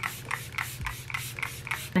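Fine-mist pump spray bottle of hydrating setting spray (Ciaté London Everyday Vacay coconut setting mist) spritzed rapidly over and over, about five short hisses a second.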